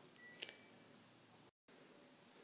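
Near silence: faint room hiss, with one small click about half a second in and a brief dead gap about one and a half seconds in.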